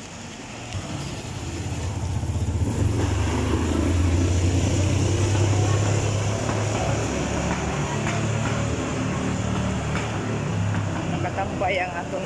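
A motor vehicle's engine running close by, a low hum that grows louder over the first few seconds, holds steady, and eases off near the end.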